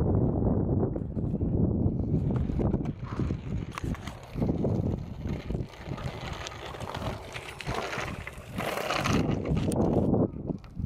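Wind buffeting the microphone as a steady low rumble for the first few seconds, then giving way to scuffing, crunching and hissing noises, with a brief louder hiss near the end.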